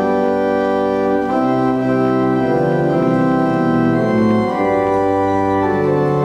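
Church organ playing a hymn in sustained full chords that change every second or so.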